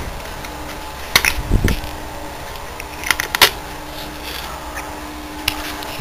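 Steady background hum with a few short, sharp clicks and one dull thump from hands and tools working around a small quad-bike engine's carburettor.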